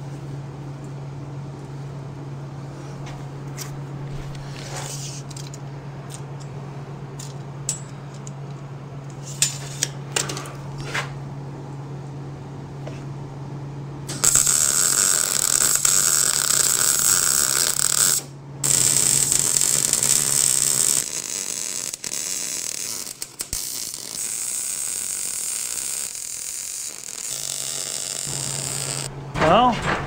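Electric arc welder laying weld beads on a steel frame: a loud, steady crackling hiss starts about halfway through and runs for most of the rest, broken by a few short pauses between beads, over a constant low hum from the welder. Before that, a few clicks and knocks as the work is set up.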